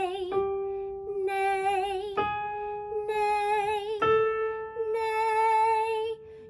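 A woman sings held "nee" notes in mixed voice, with vibrato, climbing step by step toward A4. A piano strikes each new, slightly higher note about every two seconds, just before she sings it.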